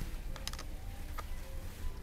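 A few light clicks inside a Fujitec passenger elevator car, a quick cluster about half a second in and a single one a little after a second, over a low steady hum.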